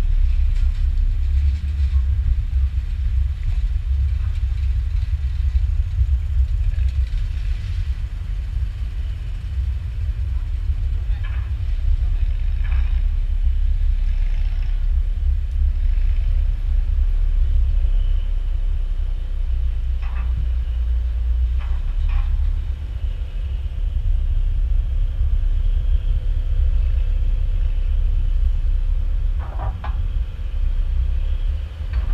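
Wind buffeting the microphone of a camera held on a pole outside a car window: a steady, unsteady-textured low rumble, with faint voices now and then.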